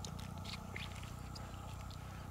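A few faint clicks and soft squishes of gloved fingers working pearls out of an opened freshwater pearl mussel's flesh, over a steady low rumble.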